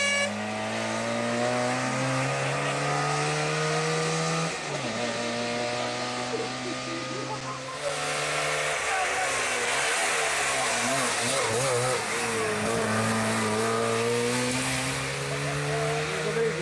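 Trabant P60 rally car's two-stroke twin-cylinder engine revving hard as it accelerates, its note rising and dropping back at gear changes about four and a half and eight seconds in. After that the engine note wavers under more road and tyre noise.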